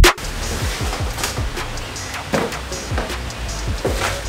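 Background hip-hop style music: a drum-machine beat with deep, falling bass kicks repeating under a steady low bed.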